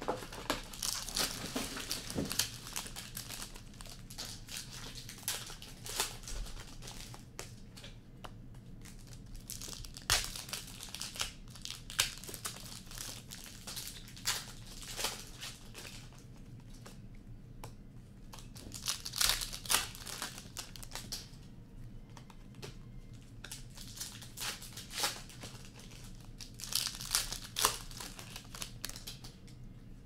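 Upper Deck Series Two hockey card pack wrappers crinkling and tearing open in irregular bursts as packs are opened and the cards handled.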